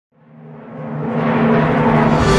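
Opening of a programmed orchestral fanfare: from silence it starts a fraction of a second in and swells in a steady crescendo, low sustained notes underneath a growing mass of sound.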